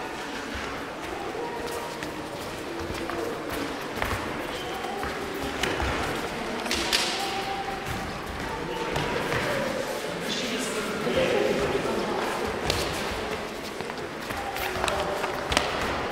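Knife-fighting bout on gym mats: scattered thuds and slaps of footwork and strikes with training knives, the sharpest about seven seconds in, with faint voices in the hall.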